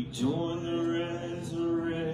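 Worship singers holding a long, steady sung note, with a new syllable starting just after the beginning.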